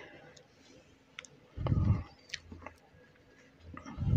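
A few faint sharp clicks and one dull thump about halfway through: tool and handling noise as a screwdriver is worked and set down at a washing machine.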